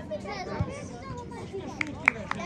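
Several teenage footballers shouting and calling to each other across the pitch, voices overlapping, with a short sharp knock near the end.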